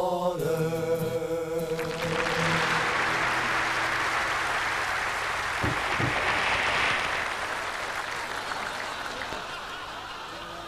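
A vocal group's held closing harmony ends about two seconds in, then a live audience applauds, building up and slowly dying away toward the end.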